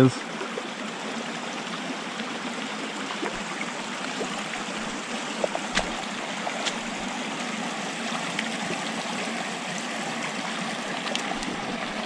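Small creek running over rocks in shallow riffles: a steady babble of water. A few brief clicks stand out about halfway through and again near the end.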